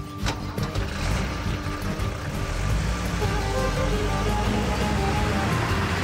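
A car driving off: engine and tyre noise swelling about a second in and holding steady, mixed with background music of sustained notes.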